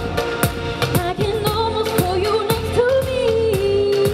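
A woman singing a melody into a microphone over backing music with a steady beat, holding a long note in the second half.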